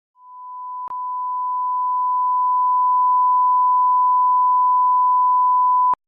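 A steady electronic reference tone, one pure pitch with no other sound. It swells in over the first few seconds, drops out briefly about a second in, and cuts off suddenly just before the end.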